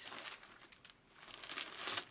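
Frosted plastic clothing bag crinkling as it is handled, quieter about a second in, then crinkling more densely and louder near the end.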